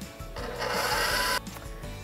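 KitchenAid Professional 550 HD stand mixer running with its wire whisk attachment while whipping heavy cream and sugar. The motor whirs steadily for about a second, then stops abruptly.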